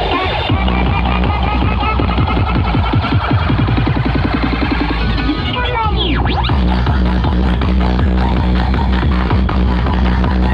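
Loud electronic dance music with heavy, steady bass blaring from a truck-mounted DJ speaker stack. A sweeping pitch effect rises and falls a little past the middle.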